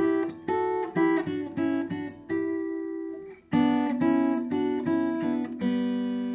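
Furch Yellow acoustic guitar fingerpicked, playing a melody in thirds with two notes plucked together. A quick run leads to a held pair of notes about two seconds in, then a second run ends on a pair left ringing near the end.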